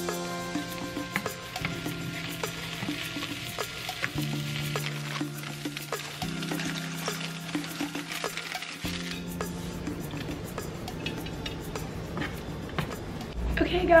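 Sliced mushrooms sizzling in a frying pan, with small clicks from stirring and handling, over soft background music of held notes that change every couple of seconds.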